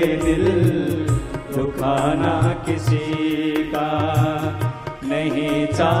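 Hindi devotional bhajan music: a melody over a steady, repeating drum beat.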